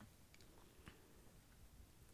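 Near silence: room tone with a couple of faint clicks, small handling noises as an iPod is passed from hand to hand.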